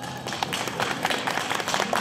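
Audience applause: many scattered hand claps, irregular and overlapping.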